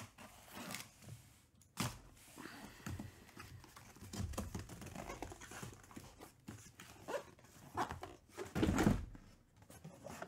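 Cardboard shipping case being opened by hand: the tape seam slit, the flaps pulled open and the hobby boxes lifted out, with cardboard scraping and rustling, a few knocks, and a louder thump near the end.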